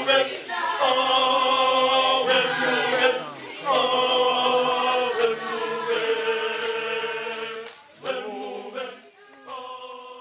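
A group of voices singing a cappella in harmony, in long held phrases broken by short pauses, with a few sharp percussive hits; the singing grows quieter near the end.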